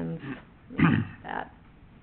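A woman coughing: one strong cough about a second in, followed by a smaller one.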